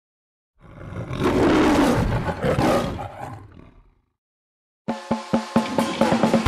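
A roaring sound effect swells and fades over about three seconds. After a short silence, music with sharp, regular percussive beats starts near the end.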